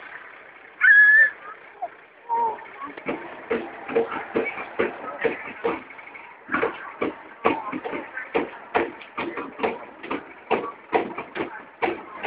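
A drum beaten in an uneven run of sharp strikes, several a second, with voices around it. A short high call comes about a second in.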